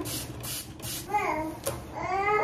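A baby babbles once, briefly, about a second in. Around it, hands working styling cream through wet curly hair make a repeated soft swishing.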